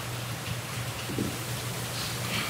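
Steady hiss with a low, constant electrical hum: the room tone of a courtroom microphone feed, with no one speaking.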